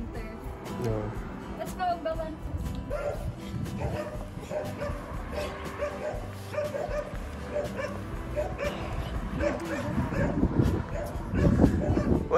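Small dogs giving short barks and yips several times, excited at setting out on a walk, over steady background music.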